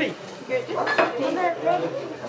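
Dishes and cutlery clinking, with a sharp clatter about a second in, over people chattering.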